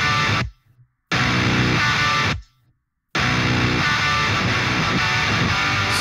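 Heavily distorted metal rhythm guitars from the MLC Subzero amp sim played back in three stop-start phrases, cutting off sharply to silence about half a second in and again about two and a half seconds in. A slow-attack Distressor compressor on the guitar bus adds smack to each re-entry after the silences.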